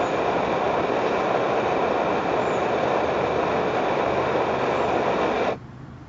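Edelrid Hexon stove burner running on Coleman fuel fed by syringe, a steady loud rushing burn that cuts out suddenly near the end. The flame goes out because the syringe's fuel is used up and no more fuel reaches the burner.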